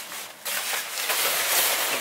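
A shower curtain rustling as it is lifted, shaken out and gathered by hand, an uneven rustle that gets louder about half a second in.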